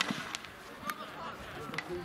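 A few sharp clacks of field hockey sticks striking during play, with players' voices calling in the background.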